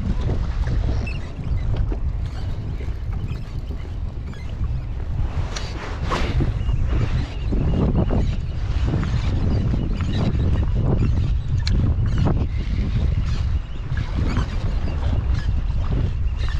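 Wind buffeting a camera microphone in a steady low rumble, with small waves slapping against a plastic kayak hull now and then.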